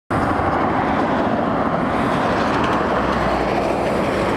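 Steady traffic noise from vehicles passing close by on a busy highway.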